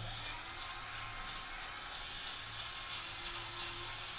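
Small battery-powered DC gear motor spinning a plastic robot wheel, giving a steady, faint whirring hiss with a thin whine in it.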